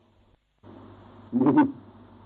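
A man clears his throat once, a short, loud, pitched burst about a second and a half in. It sits over the steady hiss of the recording, which comes in after a brief dropout at the start.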